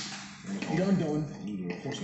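Speech: a person talking, starting about half a second in and running on in short phrases.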